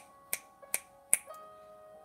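A hand snapping its fingers in a steady rhythm, about two and a half sharp snaps a second, stopping a little after a second in. Soft held keyboard-like chords play under the snaps and change to a new chord after the snaps end.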